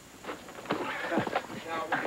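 Short shouts and cries from a TV drama soundtrack, one falling in pitch about halfway through.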